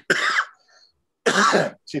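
A man coughing twice, two short harsh coughs a little over a second apart.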